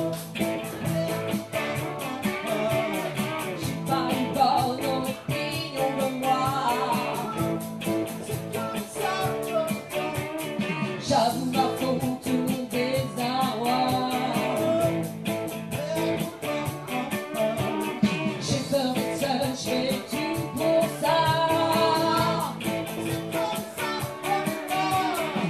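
A live pop-rock song: electric guitar strumming over a steady beat, with a singing voice carrying the melody.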